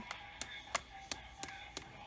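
Toy mallet striking a thin stake in garden soil: a steady series of sharp taps, about three a second.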